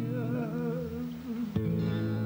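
A man's sung note, held with vibrato and fading about a second in, over acoustic guitar accompaniment; a new guitar chord sounds about one and a half seconds in.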